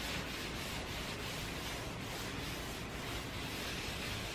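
Paper napkin rubbing wood restorer into a finished wooden tabletop: a soft, steady rub over an even background hiss.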